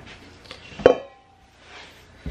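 A single sharp clank of a stainless steel mixing bowl being handled, ringing briefly with a metallic tone that fades within about half a second.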